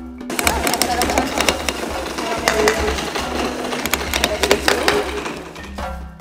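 Hammers striking chisels into stone blocks, several at once: a rapid, irregular clatter of sharp taps that stops near the end.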